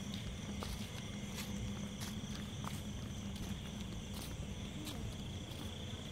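Crickets trilling steadily at a high pitch over a low steady hum, with scattered soft footsteps on wet paving.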